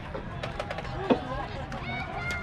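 Indistinct voices of players and onlookers around a youth baseball field, with one sharp knock about a second in.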